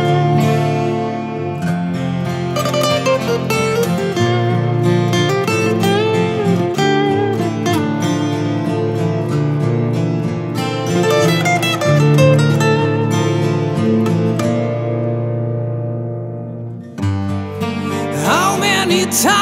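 Instrumental intro of an acoustic rock ballad, led by acoustic guitar with held bass notes, dipping in loudness shortly before the end.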